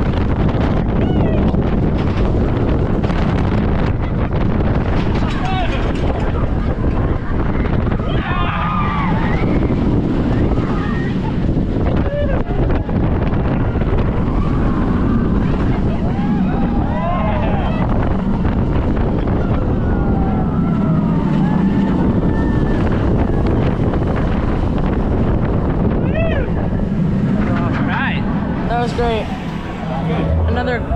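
Loud wind noise on the microphone of a rider on a moving B&M hyper roller coaster, with riders' screams and shouts rising over it several times. The noise eases a little near the end as the train slows.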